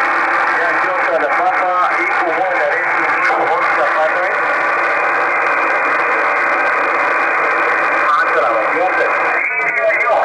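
Shortwave amateur radio receiver tuned to a single-sideband voice signal on the 20-metre band: a steady band of static hiss, sharply limited in pitch by the receiver's narrow filter, with weak, garbled voices coming and going through the noise, plainer near the end.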